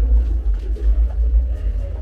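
A loud, steady low rumble with faint voices underneath.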